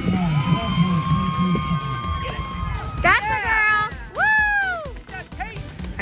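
A public-address announcer calling the 100 meter dash, with music playing. A held note gives way, about three seconds in, to two rising-and-falling notes.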